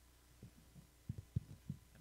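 A quick run of dull, low thumps, about eight in a second and a half with the loudest near the middle. These are handling knocks picked up as things at the music stand and keyboard are moved near the microphone.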